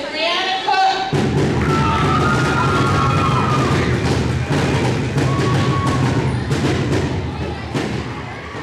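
Audience clapping and cheering, starting suddenly about a second in and staying loud, with a few shouts rising above it.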